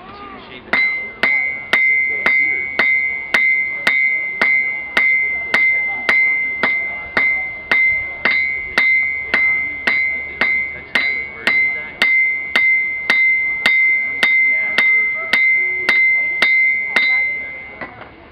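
Hand hammer forging hot iron into a flint striker on an anvil, about two blows a second in a steady rhythm, with the anvil ringing at a steady high pitch between blows. The hammering starts about a second in and stops just before the end.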